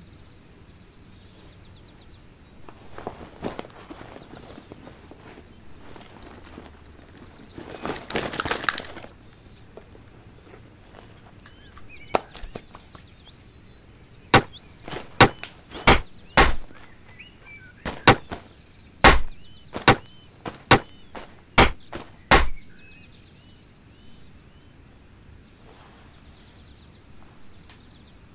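Dry wood cracking: two bursts of crackling about 3 and 8 seconds in, then a run of about a dozen loud, sharp cracks, roughly one a second. Faint bird chirps underneath.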